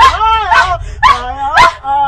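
A person's short, high yelping cries, about four in quick succession, each rising and falling in pitch, as a woman is chased by a man with a raised stick.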